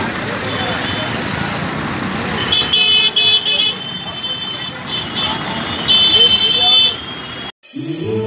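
A vehicle horn honking in two spells, a stuttering series of short blasts about two and a half seconds in and a held blast of about a second near six seconds, over a steady bed of crowd chatter and street traffic. The sound cuts off suddenly just before the end.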